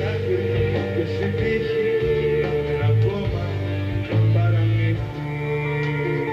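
Live pop-rock band music, with electric guitar over held bass notes.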